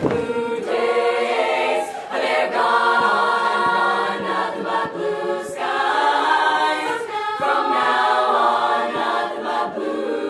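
Youth women's barbershop chorus singing a cappella in close harmony, holding full chords that change every second or so with brief breaks between phrases.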